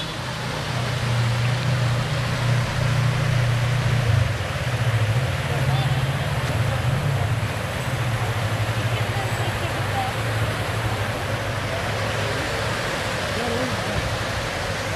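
Public fountain's many water jets splashing steadily into the basin, a constant rushing hiss, with the chatter of a crowd mixed in and a low steady hum underneath.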